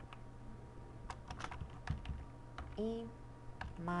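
Computer keyboard typing: scattered single keystrokes, irregular and a few per second, as C++ code is typed.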